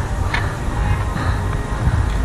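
Wind buffeting an action camera's microphone, a dense uneven rumble, with faint background music underneath.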